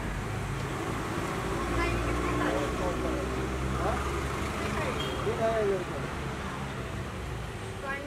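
A motor vehicle engine running close by on the street, a steady low hum, with indistinct voices over it.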